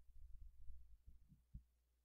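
Near silence, with a few faint, irregular low thuds.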